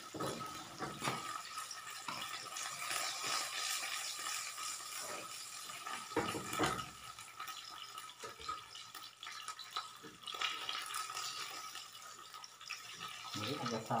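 Eggs frying in oil in a non-stick pan on a gas stove, sizzling with a steady hiss. There is a short knock about halfway through.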